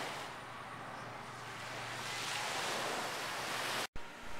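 Small waves washing onto a sandy beach, a steady rush that swells slightly and then cuts off suddenly just before the end.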